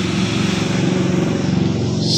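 A steady, low engine-like drone with no clear start or stop.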